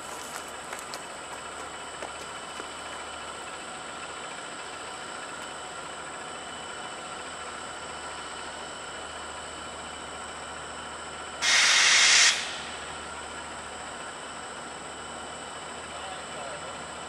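Steady background noise from a distant train. About eleven seconds in, a loud hiss lasting about a second starts and cuts off sharply.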